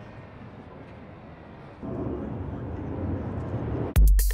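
A car engine running out on a cone course at a distance: a faint low rumble that jumps louder about two seconds in and keeps building.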